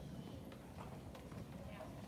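Low murmur of many children's voices with scattered light footsteps on the hard floor.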